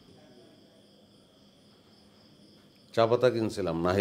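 Faint, steady chirring of insects such as crickets in the background. About three seconds in, a man's voice starts loudly.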